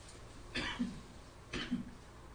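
A man coughs twice, about a second apart.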